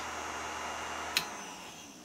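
Steady whirr of the freshly powered Anet A8 3D printer's cooling fans, with one sharp click about a second in; the whirr fades slightly near the end.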